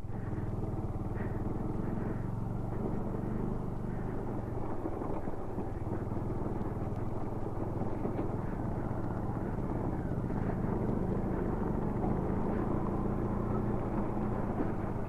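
Bajaj Dominar 400's single-cylinder engine running steadily while the motorcycle rides over a rough, rocky dirt track, heard from a camera mounted on the bike.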